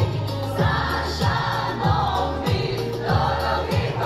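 A song sung live over backing music with a steady kick-drum beat, about three beats every two seconds.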